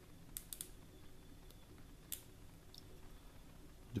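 A few faint, scattered light clicks as a rifle scope's windage/elevation turret cap is unscrewed by hand.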